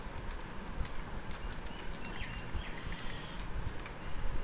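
Irregular clicks of a computer keyboard and mouse as cells are selected and pasted in a spreadsheet, over a low hum of room noise. A brief faint high chirping comes about two to three seconds in.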